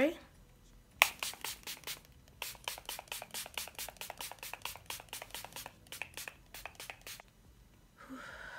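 Pump bottle of setting spray spritzed onto the face many times in quick succession: a first short burst about a second in, then after a pause a long run of brief hisses, several a second, stopping near the end.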